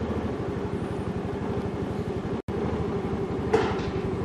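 A motor vehicle's engine running steadily, a low sound with a fast, even pulse, broken by a momentary dropout just past halfway.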